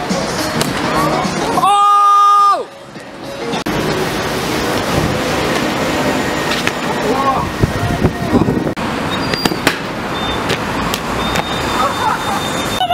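Busy city street noise, broken about two seconds in by a loud, steady tone with many overtones that lasts about a second and cuts off suddenly. Scattered short knocks come near the end.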